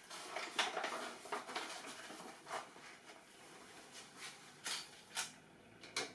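Faint, scattered taps and clinks of utensils and containers being handled on a worktop, about half a dozen separate small knocks.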